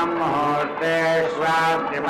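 Male voice chanting Sanskrit Vedic mantras on a near-steady pitch, in long held syllables with short breaks between them.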